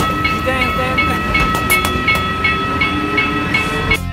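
Passenger train on a railway line, with a steady high whine and a quick repeating high ping about three times a second.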